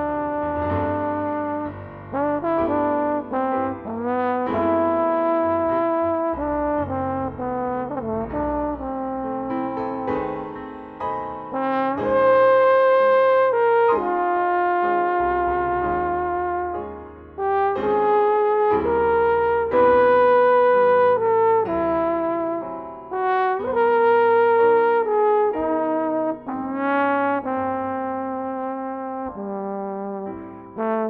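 Jazz trombone playing a slow melody in long held notes, sliding into some of them, over soft low accompaniment.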